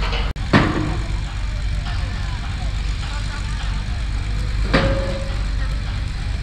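Steady low engine rumble from the engine driving the slipway haulage that pulls a bulkhead vessel up the rails, with a couple of brief faint voices.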